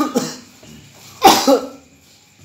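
A man coughing: a short harsh cough about a second in, right after the tail of another at the very start.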